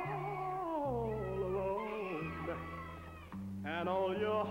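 Male soul singer singing a drawn-out, sliding vocal line over the band's backing, with bass notes underneath. About three and a half seconds in he rises to a high held note with wide vibrato.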